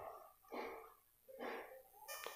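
Two faint dog barks, about a second apart, heard from a distance.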